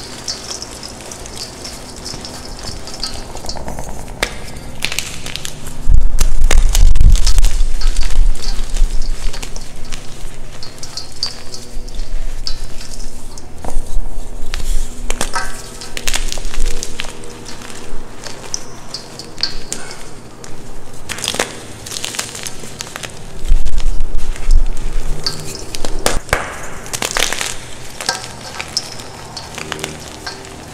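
Hands crushing and crumbling soft blocks of plain white gym chalk packed with baby powder, a continuous crunch with many small sharp cracks as the chalk breaks and the powder squeezes between the fingers. Two louder, heavier stretches of pressing come about six seconds in and again near twenty-four seconds.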